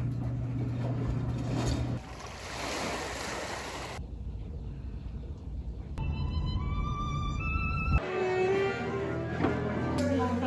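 A string of unrelated two-second clips cut together, the sound changing abruptly every two seconds. It opens with a front-loading washing machine's drum turning over a steady low hum, passes through noisy everyday stretches including a car interior on the road, and ends with bowed-string music.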